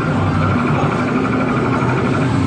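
Loud, steady arcade din: the dense noise of many game machines, with faint pulsing electronic tones over a low rumble.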